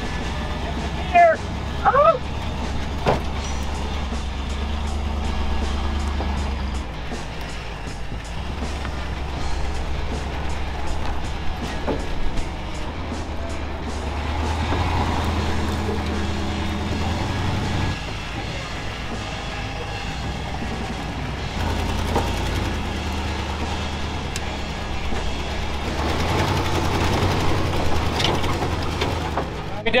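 Ford tow truck's engine running at low speed in four-wheel low as it crawls down a rocky hill, its load rising and falling every few seconds, with rock crunching and clicking under the tyres.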